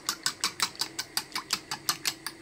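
A fork whisking two raw eggs in a ceramic bowl, the tines clicking against the bowl in a quick, even rhythm of about six or seven strokes a second.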